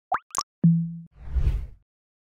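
Synthetic logo-intro sound effects: two quick rising pops, then a short steady low hum of about half a second, then a low rumbling whoosh that swells and fades out.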